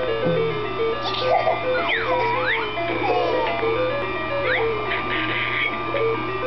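A simple electronic children's tune of short beeping notes playing on repeat, with sliding, swooping sound effects over it.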